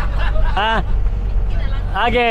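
Steady low rumble of a van's engine and road noise heard inside the cabin, with a short spoken word about half a second in.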